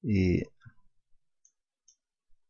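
A short spoken syllable, then a few faint, sparse computer mouse clicks.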